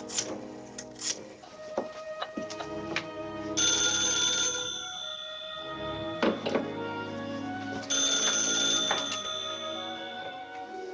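A rotary desk telephone's bell ringing twice, each ring lasting about two seconds, over an orchestral film score.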